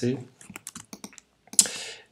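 Computer keyboard keys tapped in a quick run of light clicks, most likely the shortcut that zooms the image in. A short hiss near the end.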